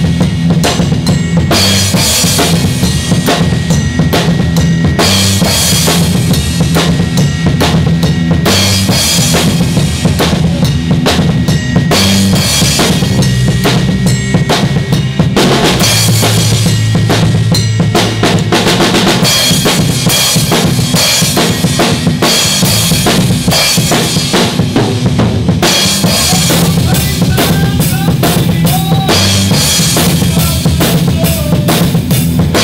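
A Pearl acoustic drum kit played hard in a heavy rock beat: bass drum, snare and cymbals struck steadily without a break. Sustained low amplified notes that change pitch every second or two run underneath.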